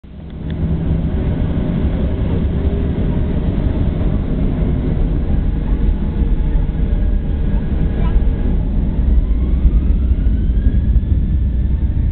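Inside the cabin of a Boeing 737-800, a steady low rumble from its CFM56 turbofan engines and the rolling airframe as it taxis. A faint whine rises in pitch over the last three seconds.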